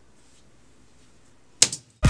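Low room tone, broken near the end by one short, sharp click or burst of noise.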